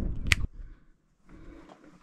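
A single sharp finger snap about a third of a second in, then a moment of near silence.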